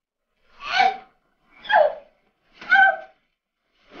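A person gasping for breath while being smothered under a quilt: three short, strained gasps about a second apart, with a fourth starting at the very end.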